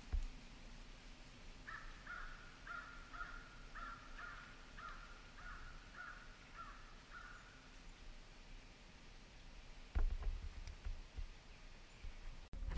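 A crow cawing about ten times in an even run, roughly two caws a second, then falling silent. A couple of low bumps near the end.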